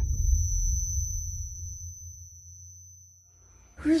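Low rumble of an explosion on a dirt road dying away over about three and a half seconds, under a steady high-pitched ringing tone that stops near the end as a woman's voice begins.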